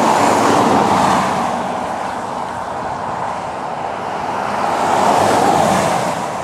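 Road traffic on a highway: tyre and engine noise from passing vehicles, one fading away over the first couple of seconds and another swelling up near the end.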